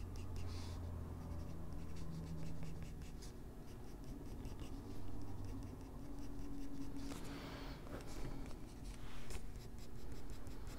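Coloured pencil scratching over toned gray drawing paper in many quick, short strokes, drawing in fur.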